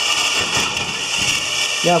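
Electric motor spinning the wheel-studded roller shaft of a robot ball-pickup prototype: a steady whirring run with a thin high whine.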